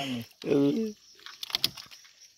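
A man's voice in two short bursts in the first second, then faint scattered clicks and rustles.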